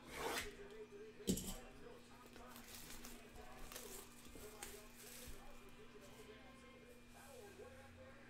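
A box cutter slitting the shrink wrap on a cardboard trading-card box, with a sharp click about a second in, then the plastic wrap crinkling in short rustles as it is peeled off.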